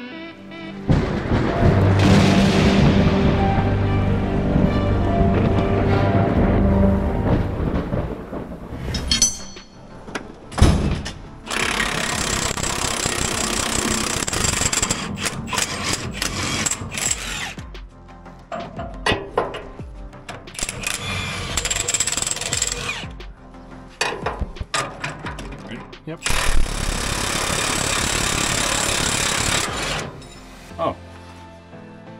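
Cordless impact wrench hammering on bolts in several runs of a few seconds each, with shorter stop-start bursts between them. Background music plays over the first several seconds.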